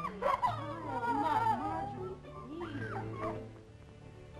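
A woman whimpering and sobbing in broken, wavering cries over background music, loudest in the first half and fading away after about two seconds.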